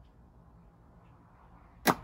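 Faint room tone, then one sharp click near the end.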